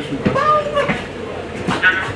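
Cabin noise of a 1954 Canadian Car-Brill T48A electric trolley bus under way: steady running noise with a faint steady hum, beneath passengers' talk.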